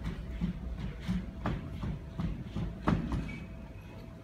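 Boston Dynamics Spot Mini quadruped robot's feet stepping on a hollow stage: a quick run of dull thuds, a few per second, with two sharper knocks, the louder about three seconds in.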